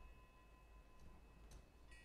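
Near silence: room tone, with a faint steady high tone.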